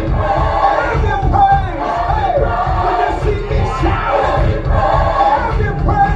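Congregation singing and calling out together over a live worship band, with drums and bass keeping a steady beat.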